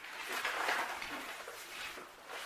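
Sheet of stiff 10-ounce gesso-primed canvas rustling as it is handled and let down from its roll, an irregular papery rustle that is strongest in the first second and then softens.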